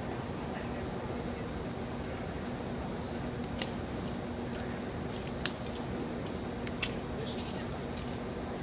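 Indoor arena background: a steady low hum with a noisy wash and faint voices, broken by a few short sharp clicks in the second half.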